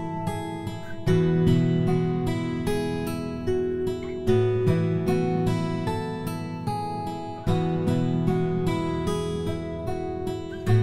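Background music of an acoustic guitar strumming a steady pattern, with the chord changing about every three seconds.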